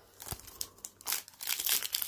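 Foil wrapper of a Prizm football card pack crinkling and rustling as it is handled and pulled open by hand, a dense run of crackles that gets busier in the second second.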